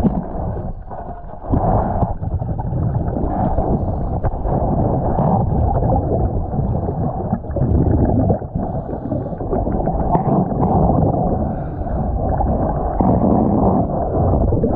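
Muffled underwater rumbling and gurgling of water, picked up by a submerged camera as the diver moves along the hull. It is steady and loud, with a brief dip about a second in.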